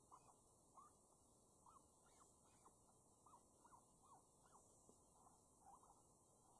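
Faint, short high squeaks repeating irregularly, about two or three a second, each a quick rise and fall in pitch. These are animal-call squeaks played by a FoxPro electronic game caller.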